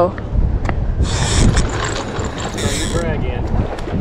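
Wind buffeting the microphone, a steady low rumble, with two brief hissing gusts about one and three seconds in and faint voices in the background.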